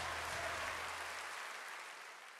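Congregation applauding as the song's last low held note dies away about two-thirds of the way through; the clapping fades steadily.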